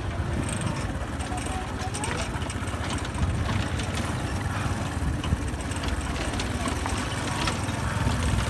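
Motorcycle-and-sidecar tricycle running along a bumpy dirt track: a steady engine drone with scattered knocks and rattles from the ride.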